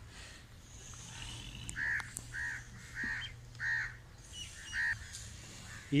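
A crow cawing: a run of about five short caws, evenly spaced about half a second apart, starting about two seconds in.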